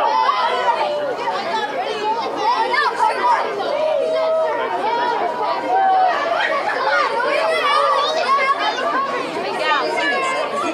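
A group of boys' voices chattering and calling out over one another, many at once, with no single speaker standing out.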